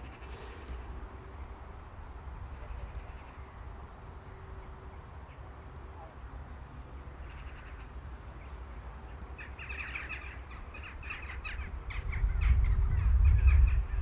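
Birds calling now and then, with a cluster of repeated calls in the last few seconds, over a steady low rumble that grows louder near the end.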